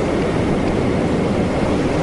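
Steady rushing background noise with no pitch and no change in level: the recording's own hiss and room noise.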